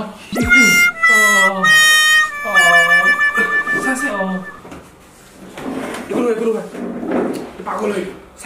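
A man wailing in loud, drawn-out, pitched cries for about four seconds, then sobbing more quietly in short broken bursts.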